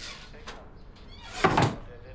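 A wooden kitchen cupboard door swung shut, closing with a single thump about one and a half seconds in.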